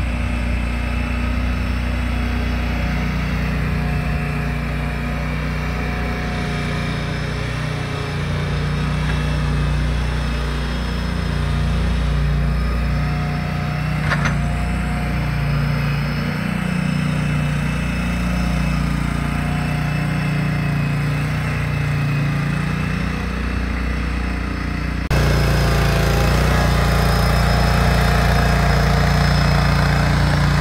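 Small compact loader's engine running steadily as it pushes snow with a front snow blade. About 25 s in the sound abruptly gets louder and rougher.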